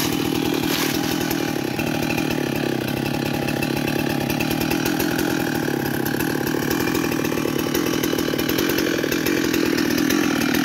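Husqvarna two-stroke chainsaw running steadily at idle, its pitch holding even and not cutting.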